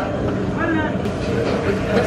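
Indistinct talking over a steady low background rumble.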